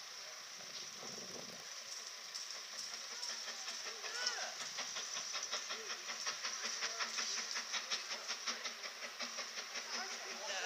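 Four-cylinder GWR Castle-class steam locomotive 5043 Earl of Mount Edgcumbe approaching under steam: a rapid, even beat of exhaust chuffs that starts about three seconds in and grows louder as it nears.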